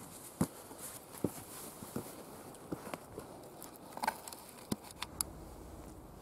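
Scattered light knocks, clicks and scuffs: footsteps on loose dug garden soil and the handling of the camera as it is taken up by hand, with a sharper click at the very start.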